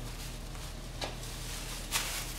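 Electric forge blower motor running with a steady low hum, with a light knock about a second in and another near the end.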